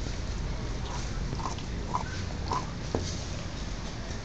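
A dog licking and gnawing a cooked pork trotter, making short wet smacks and clicks about every half second from around a second in.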